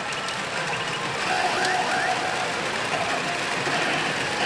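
Pachinko parlor din: a steady wash of noise from rows of machines and rattling steel balls. Faint electronic effect tones from a PF Mobile Suit Gundam Unicorn pachinko machine sit over it as its screen plays an effect sequence.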